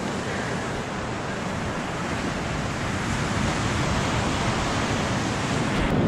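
Ocean surf washing onto a sandy beach and rocks, a steady rush that grows slightly louder toward the end.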